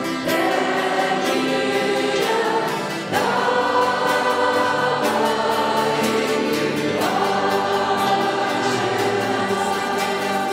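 Many voices singing a worship song together like a choir, in long held notes, with new phrases starting about three and seven seconds in.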